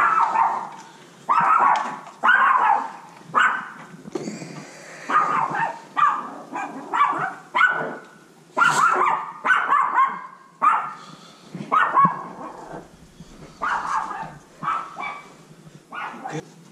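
A dog barking over and over, about one bark a second with brief gaps between them.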